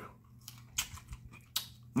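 Chewing a raw mini sweet pepper: several short, crisp crunches with wet mouth clicks between them.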